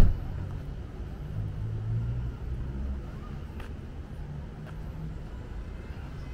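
City street traffic: a car engine runs close by with a low rumble that swells about two seconds in and then eases off. A short sharp knock comes right at the start.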